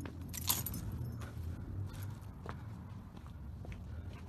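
A brief jangle of keys about half a second in, over a low rumble of movement and phone handling noise, with a few fainter clicks later.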